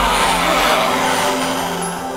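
Magic energy-burst sound effect: a loud rushing noise with a deep rumble in the first half of it, over held background music tones, slowly fading.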